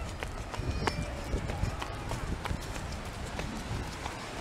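Footsteps on beach sand and the jostle of a hand-held camera carried at a walk: irregular soft thuds and clicks about twice a second over a low rumble.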